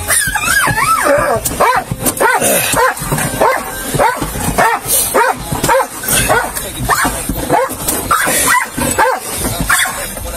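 A dog in the car whining and yipping over and over, about two short rising-and-falling cries a second.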